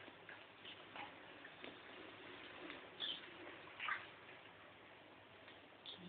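Faint, irregular light clicks and small water sounds from hamsters being handled and washed by hand in a shallow plastic basin of water, with a few brief high sounds about three and four seconds in.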